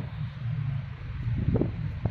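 Wind buffeting the phone's microphone, a steady low rumble.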